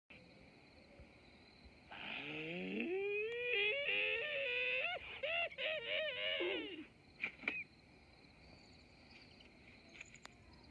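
Animated wolf howling played through a TV speaker: a long howl that starts low and rises, then wavers up and down in steps for about five seconds, followed by two short cries. A faint steady hiss lies underneath.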